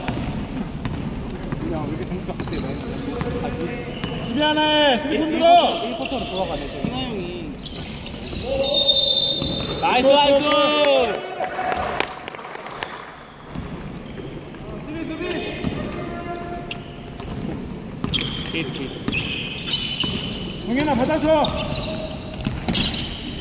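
Basketball being dribbled on a hardwood gym floor during a game, with repeated sharp bounces, sneakers squeaking and players shouting to each other now and then, in a large reverberant gym.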